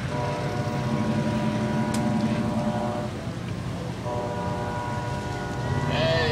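Horn of a departing ACE commuter train sounding two long blasts: the first lasts about three seconds, then after a short break the second sounds for about two seconds.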